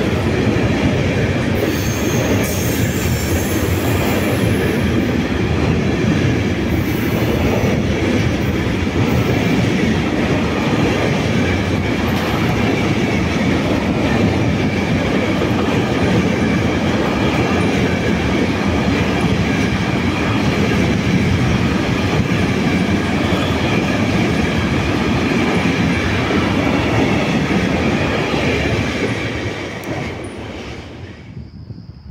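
Container wagons of a long intermodal freight train rolling steadily past on the rails, a loud dense rumble with a thin high wheel squeal running through it. The noise falls away near the end as the last wagon goes by.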